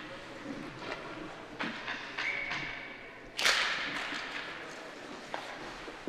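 Ice hockey rink sounds of skates and sticks on the ice, with scattered light taps. About three and a half seconds in comes one sharp crack that rings on briefly in the arena.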